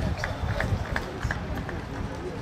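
Outdoor football-ground ambience: low rumble of background voices with a string of short, sharp clicks or taps, about six in under two seconds.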